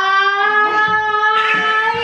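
A woman's voice holding one long, high, steady sung note, gliding up slightly as it starts.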